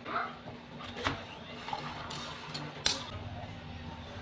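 Large cleaver-style kitchen knife chopping vegetables on a plastic cutting board: a few separate knocks of the blade on the board, the loudest near the end.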